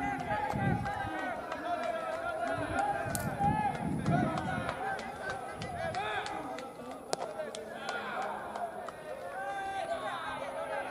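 Many overlapping voices of players shouting and calling across the ball field, with no single clear speaker. About seven seconds in, a single sharp pop of the pitched ball smacking into the catcher's mitt.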